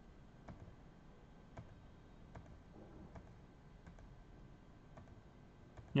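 Several faint, irregularly spaced clicks of computer controls over quiet room tone: the moves of a game being stepped through one at a time in chess software.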